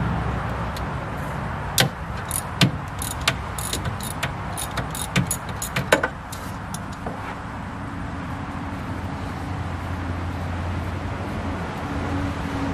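Socket ratchet working half-inch nuts off a golf cart motor's terminal lugs: a run of irregular metal clicks and clinks from about two to seven seconds in, over a steady low hum.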